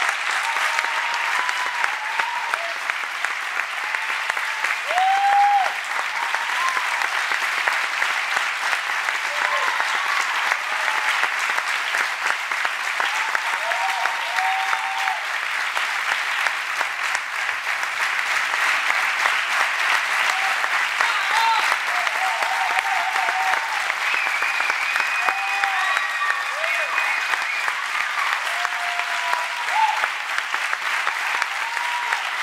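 A theatre audience applauding steadily, with scattered short shouts calling out over the clapping.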